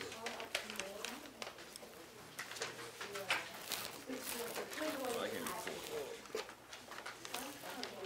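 Background chatter of several students talking at once, with scattered light clicks and rustles.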